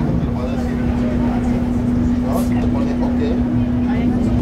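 Running noise of a Tatra T3R.PLF tram heard from inside the car: a steady low rumble with a constant electrical hum.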